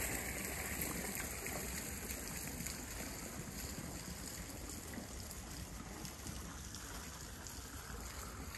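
Small garden fountain splashing into a lily pond, a steady trickling that grows fainter over the first few seconds.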